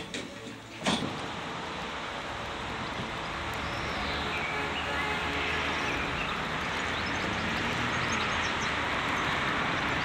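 Steady outdoor background noise, an even hiss with a low rumble, starting after a brief click about a second in.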